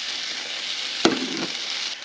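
Shredded mozzarella and Tuscan-blend cheese sizzling steadily as it fries inside two closed Dash mini waffle makers, with one sharp knock about a second in.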